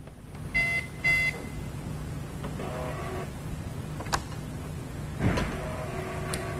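A chip-and-PIN card payment terminal gives two short beeps, then its built-in receipt printer runs with a steady whirr, with a single click partway through.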